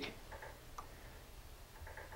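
Quiet room tone with two or three faint clicks from a computer mouse dragging the on-screen cursors of the scope software.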